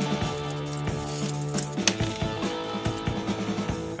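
Background music with steady held notes, over scattered light metallic clinks and rattles of a bicycle roller chain being fitted back onto its sprockets by hand.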